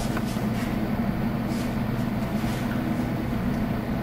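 A steady low hum of room background noise, with a few faint light taps.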